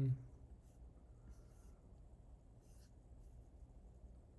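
Faint computer keyboard and mouse sounds: a few soft, short clicks and brushes spread over a few seconds, over a low steady hum.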